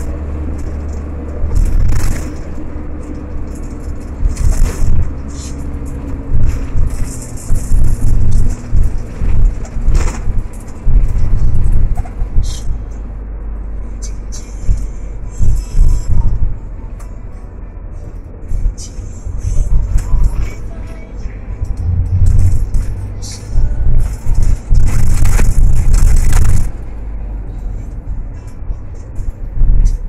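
Music over the low rumble of a car ride heard inside a taxi cabin. Loud low-pitched bumps and buffeting surge and fade every second or two.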